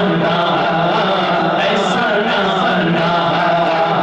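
A man chanting devotional verses in a drawn-out melodic style into a microphone, with long held notes.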